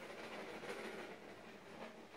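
Faint, steady scratching of a pencil drawing on a primed canvas.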